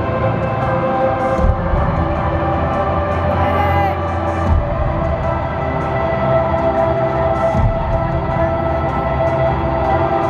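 Live music over an arena sound system: sustained, held chords with a deep bass note underneath that drops out about halfway through.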